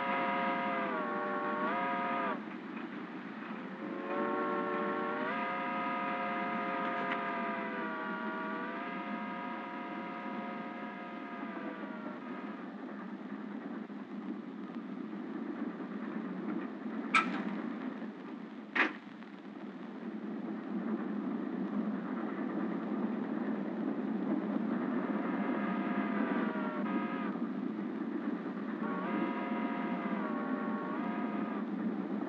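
Steady rumble of a moving passenger train. Long pitched tones step up and down in pitch over the first dozen seconds and again near the end. Two sharp clacks come about a second and a half apart, past the middle.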